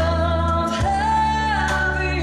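Live band playing, with a woman singing long held notes into a microphone, stepping up to a higher note just under a second in, over sustained bass and electric guitar.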